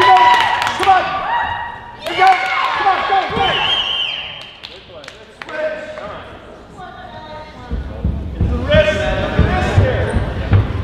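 Several people shouting over one another at a wrestling match: coaches and spectators yelling at the wrestlers. The shouting is loud for the first few seconds, dies down in the middle, and picks up again near the end, with a few thuds in between.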